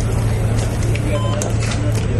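A steady low mechanical hum, with one short electronic beep from a patient vital-signs monitor about a second in.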